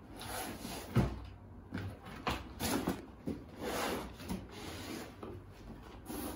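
Large cardboard box being opened: the lid lifted off and the cardboard flaps rubbing and scraping, with a thump about a second in and several shorter scrapes and knocks after it.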